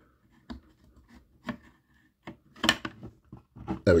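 Model-kit parts clicking and knocking as a bulkhead panel is wiggled and pressed into its seat by hand: a few separate sharp clicks, the loudest a little under three seconds in.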